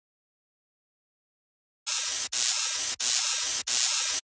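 Loud hissing noise that starts about halfway through after total silence and comes in four short stretches, each broken off by a brief gap.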